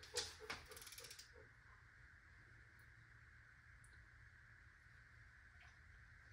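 A quick run of faint ratchet clicks from a 1/2-inch electronic torque wrench in the first second or so, as the handle is swung back after reaching torque. The rest is near silence with a low steady hum.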